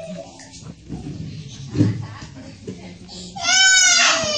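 Quiet voices in the room, then near the end a loud, high-pitched child's cry that falls slightly in pitch as it goes on.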